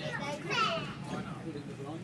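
A young child's voice: wordless high-pitched vocalising, loudest about half a second in, over the steady low running noise of a train carriage.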